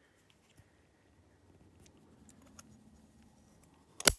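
Near silence, with a few faint ticks and scrapes as a hex key slowly turns the spring-loaded eccentric adjuster cam, winding its spring back.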